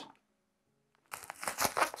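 Plastic bubble wrap crinkling and crackling as it is cut and pulled open by hand. It starts about halfway through, after a moment of near silence.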